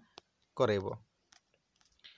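A man speaks one short word about half a second in. Around it come a few faint, sharp clicks, taps on the touchscreen as the annotated page is cleared and changed.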